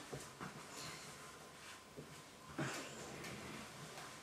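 Faint handling and movement noises: a few soft knocks and a brief rustle past the middle, over quiet room tone.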